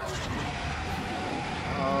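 A cartoon timberwolf's loud, rough roar: a sound effect that starts suddenly and carries on, with a deep rumble under it.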